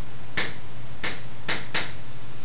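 Chalk striking and writing on a blackboard: four short, sharp clicks in under two seconds, over a steady low hum.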